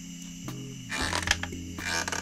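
Soft background music with low held notes, over which a wooden porch swing on chains creaks a few times.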